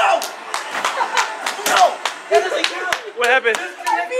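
A quick, irregular run of sharp knocks and slaps, several a second, with voices and laughter coming in during the second half.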